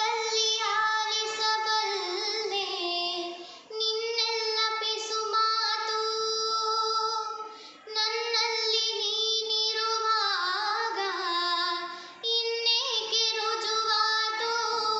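A young girl singing a Kannada song solo, her single voice the only clear source. She holds long notes that waver in pitch, in phrases broken by short breath pauses about every four seconds.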